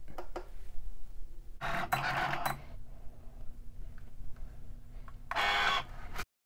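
A Cricut cutting machine starting a vinyl cut. A few small clicks are followed by a burst of motor whirring about a second and a half in, then a faint steady hum, then a louder whirring burst near the end as the cutting carriage travels.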